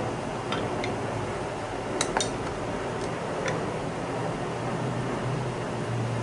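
Light metallic clicks and taps from handling pen kit parts in a pen press while a coupler and lower barrel are being lined up for pressing, with a sharper pair of clicks about two seconds in.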